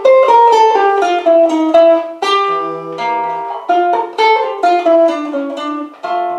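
Bossa nova instrumental introduction played by a small band, led by a plucked string instrument picking short melodic phrases that step downward.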